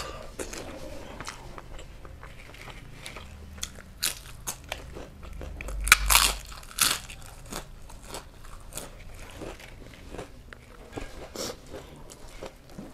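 Close-miked eating sounds: fingers mixing rice and chicken curry on the tray, then a handful of rice taken into the mouth about six seconds in, followed by chewing with many small wet mouth clicks.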